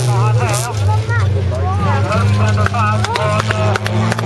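Folkrace cars' engines running steadily as they race round a gravel track, their pitch stepping up and down a few times. A man's voice talks over them in Swedish.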